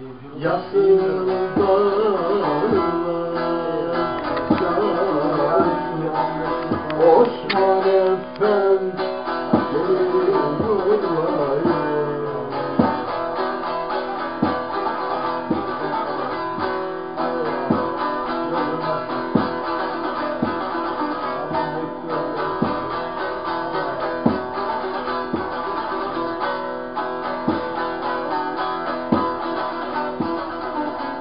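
Bağlama (long-necked Turkish saz) playing a folk tune with strummed and plucked notes. For about the first twelve seconds a voice sings a wavering melodic line over it, then the saz carries on alone with even strokes.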